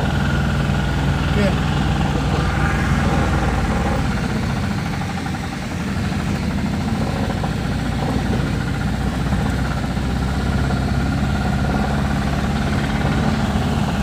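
Engine running steadily, a low even drone heard from inside a vehicle cabin as it moves through the smoke of a mosquito-fogging run.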